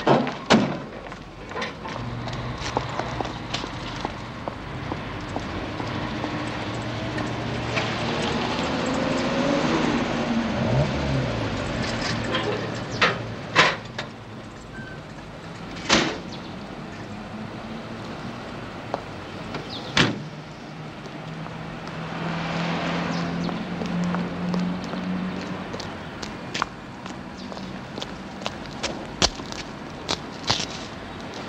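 A car engine running and passing on a street, its sound swelling and gliding in pitch about a third of the way in, with a second engine later. Several sharp car-door thunks come in the middle, the loudest a little past halfway.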